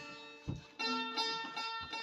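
Bağlama (long-necked Turkish saz) being played: after a brief low thump about half a second in, a quick run of plucked notes starts, with the open strings ringing steadily under them.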